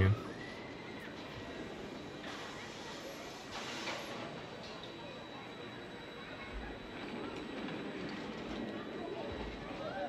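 Steel roller coaster train running along its track, with a louder passing rush about three and a half seconds in, under faint distant voices and rider screams.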